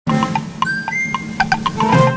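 Intro jingle: quick, bright chiming notes over a steady low tone, starting suddenly.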